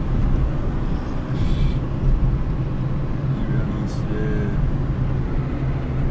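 Steady engine and road noise of a car heard from inside the cabin while driving.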